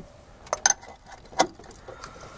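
A metal wrench clinking against the engine mount bolt and bracket as it is set on and turned, a few sharp metallic clicks.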